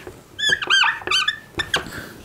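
Felt-tip marker squeaking on a whiteboard as a word is written: several short high squeaks with bending pitch in quick succession, then a couple of light taps of the pen tip near the end.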